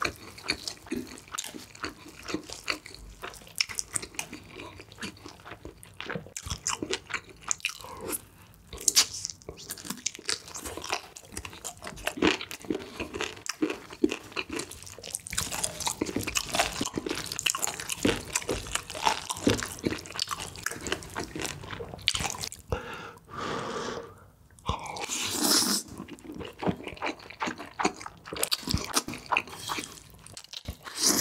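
Close-miked eating sounds: chewing and biting into a roasted chicken leg, with wet smacking and crunching. Later he eats spicy cream stir-fried noodles, and there are longer, louder stretches near the end as the noodles are slurped.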